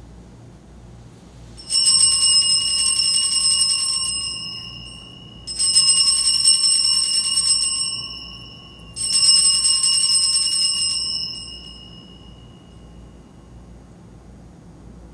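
Altar bells rung three times a few seconds apart, each ring lasting two to three seconds and fading away. They mark the elevation of the consecrated chalice at Mass.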